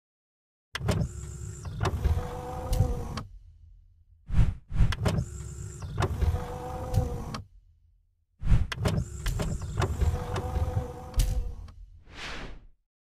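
Animated-logo sound effects of motorized panels sliding into place: three runs of mechanical whirring, each a few seconds long and marked by sharp clunks, with short silences between them.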